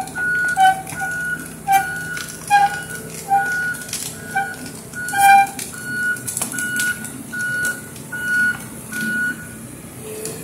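Excavator's motion alarm beeping steadily, about one short beep every half second or so, over the running diesel engine, stopping shortly before the end. Lower squeaks between the beeps in the first half and scattered clunks come from the machine working.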